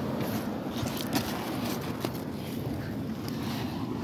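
Steady low rumble of wind on the microphone, with a few faint clicks about one and two seconds in.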